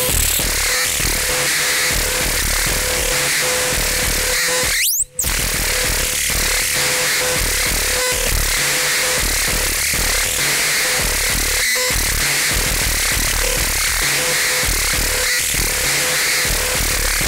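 Loud, live experimental electronic music: a dense hiss over pulsing deep bass, with a steady mid-pitched tone that cuts in and out. About five seconds in, a rising sweep ends in a sudden brief cut to silence before the sound resumes.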